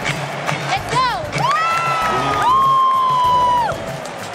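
Basketball arena crowd cheering, with a close voice shouting "go!" and then letting out two long, high-pitched whoops, each held steady for about a second.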